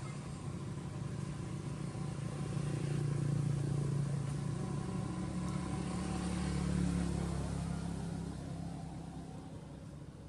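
A motor vehicle's engine going past: a low rumble that grows louder over the first few seconds, peaks about seven seconds in, then fades.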